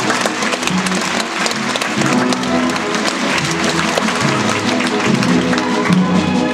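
A theatre orchestra playing fast ballet music, with audience applause over it during the dancing.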